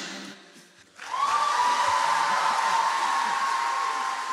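The last sung chord dies away, then about a second in an audience breaks into steady applause and cheering, with one long high cheer held over it.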